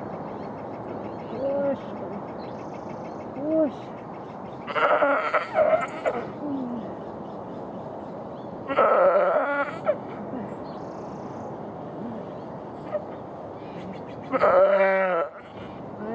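A first-time ewe in a hard lambing crying out loudly three times, a few seconds apart. Each cry is a long, strained bleat while she labours to push out an oversized lamb. Fainter short calls come in between, over a steady background hiss.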